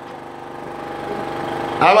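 An engine running steadily, a low even hum that grows slightly louder. A man's voice cuts back in near the end.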